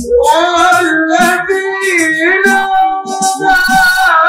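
A boy singing through a microphone in long, wavering held notes, with frame drums beating underneath.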